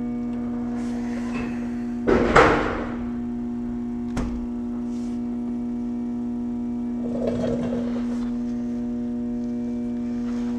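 Volkswagen Passat B7 ABS pump motor running with a steady buzzing hum, commanded on by a scan tool to push trapped air out of the ABS module while the brakes are bled. A brief clatter of handling comes about two seconds in, and a sharp click about four seconds in.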